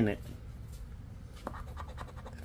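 A poker-chip scratcher scraping the coating off a scratch-off lottery ticket in a few short strokes.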